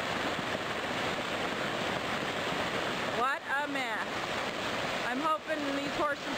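Flash-flood water rushing fast across a road and through a desert wash in a steady, even rush of running water.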